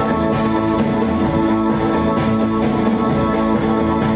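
Live band playing an instrumental passage with no vocals: electric guitar and keyboard sustaining a chord over a steady beat.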